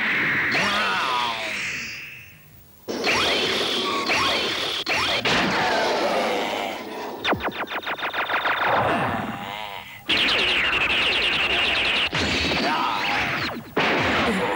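Animated-cartoon robot sound effects as Sixshot transforms and lands: a string of whooshing, whirring mechanical effects that start and stop abruptly, with a short gap a few seconds in and a rapid stutter of pulses in the middle.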